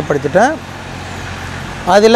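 A man's voice speaking, breaking off about half a second in and resuming near the end; in the pause a steady low background rumble with a faint hum is left.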